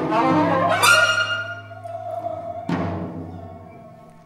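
Free-improvisation ensemble of wind, string and percussion instruments playing held tones. Sharp accents come about a second in and again near three seconds, and the sound dies away toward the end.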